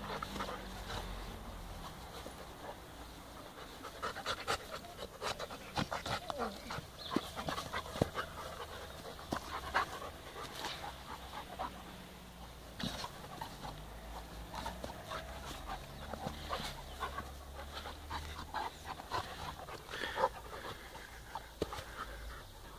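A Czechoslovakian Wolfdog and a Bernese Mountain Dog panting while they play-wrestle, with many short, irregular clicks and scuffs from their mouthing and scuffling on the grass.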